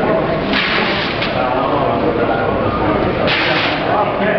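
Plastic wrapping sheet rustling as it is pulled off a large machine, in two short bursts, about half a second in and again near the end, over the murmur of people talking.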